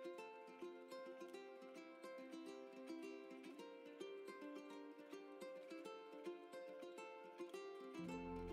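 Quiet background music: a light plucked-string tune in a steady run of short notes, with no bass line.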